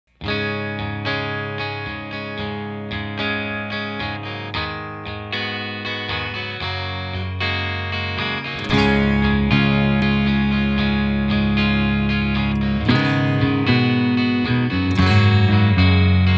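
Instrumental opening of a rock song on electric guitar with effects: a steady line of picked notes, then about halfway through a louder, fuller sustained guitar part comes in.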